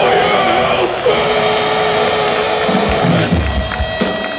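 Death metal band playing live through a festival PA, heard from within the crowd, with the audience cheering. A single note is held steady for about two seconds, and heavy low hits come near the end.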